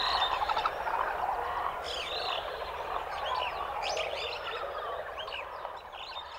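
Tropical nature ambience: many birds chirping and calling over a dense chorus of frogs, slowly fading out.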